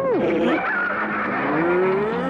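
Cartoon theme music with sliding sound effects over it: a quick falling glide near the start and a slow rising glide in the second half.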